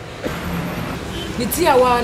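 A steady low hum, like a motor vehicle's engine running, with a voice starting to speak over it about halfway through.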